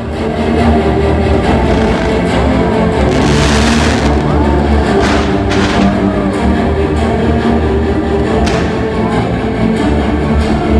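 Fireworks-show music played loud, with sustained chords and a heavy bass. Over it come a hissing rush about three seconds in and a few sharp cracks around five and eight seconds from the ground-fountain fireworks.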